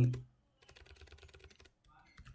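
Typing on a computer keyboard: a fast, quiet run of keystrokes that stops near the end.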